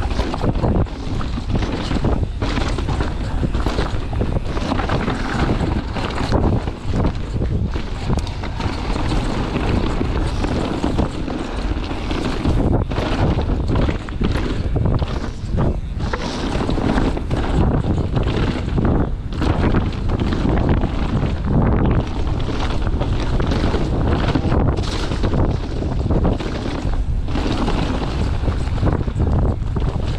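Wind rushing over the camera microphone and tyres rumbling over a dirt trail as a mountain bike descends fast, with the bike rattling and knocking over bumps and roots.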